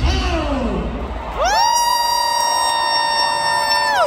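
A loud horn-like tone over crowd noise. It slides up about a second and a half in, holds one steady pitch for a couple of seconds, then drops away at the end.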